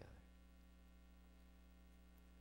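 Near silence with a steady electrical mains hum.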